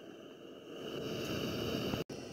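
Faint, steady wind noise on the camera's microphone: a low rumble and hiss that grows slightly louder after the first second.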